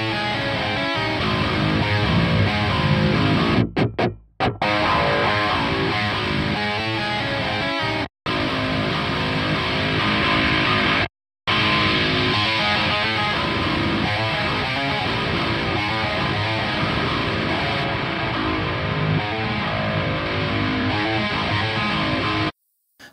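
Playback of distorted electric rhythm guitar tracks from a DAW session, with EQ changes made live on the stereo output: a boosted band in the upper mids, then a high cut. The audio cuts out briefly three times.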